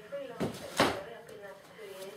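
Two short knocks about a third of a second apart within the first second, the second one louder, with faint voice between them.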